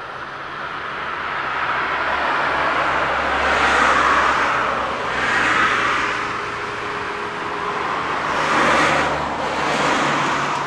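Road traffic: vehicles passing one after another, the sound swelling and fading about three times, over a low steady hum.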